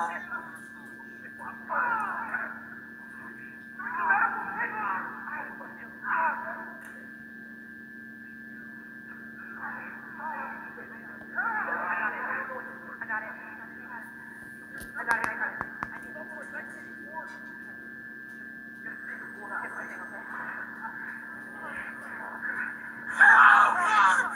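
Film soundtrack voices played through small laptop speakers, coming in short scattered bursts, over a steady electrical hum.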